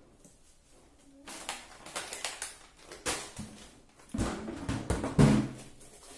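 Shopping items and plastic containers being handled and set down by a kitchen cabinet: a string of irregular knocks and clatters with rustling, starting about a second in, the loudest knock near the end.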